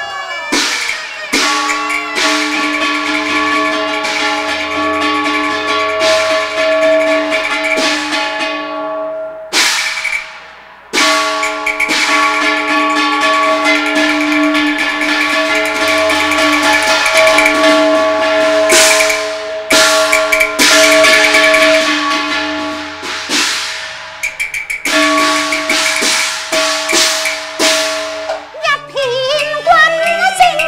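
Cantonese opera ensemble playing an instrumental passage: long held melody notes over repeated sharp percussion strikes. A voice with gliding pitch begins singing near the end.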